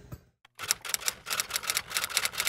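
Typewriter sound effect: a quick run of key clacks, several a second, starting about half a second in as the on-screen text types itself out.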